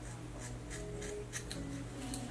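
Scissors snipping through a lock of synthetic wig hair: several short, crisp cuts spaced unevenly through the moment.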